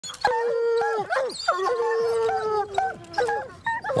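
Hounds baying at a cougar treed above them. Two long, drawn-out howls come first, then several shorter bays, with more than one dog overlapping at times.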